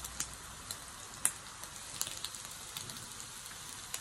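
Pork belly slices sizzling on a mookata grill pan: a steady, faint sizzle with occasional sharp crackling pops of fat.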